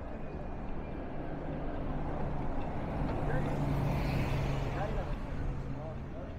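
A motor vehicle passing along the street: a steady engine hum and tyre noise that build to their loudest about halfway through and then fade.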